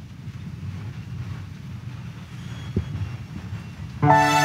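Low, steady rumbling background noise of a large church hall between parts of the service, with one soft knock nearly three seconds in.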